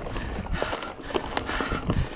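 Full-suspension mountain bike ridden over a rocky trail: tyres crunching over loose stones, with a string of sharp knocks and rattles from the bike over a low rumble.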